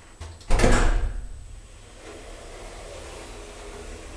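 Old KONE hydraulic elevator's door shutting with one loud thud about half a second in. A steady low hum follows.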